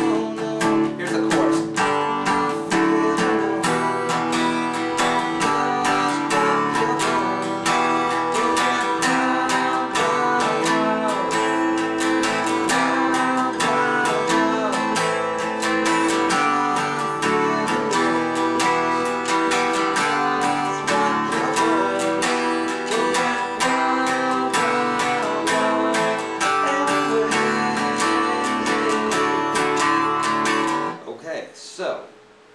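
Steel-string acoustic guitar strummed steadily in a driving rock rhythm, moving through a chord progression.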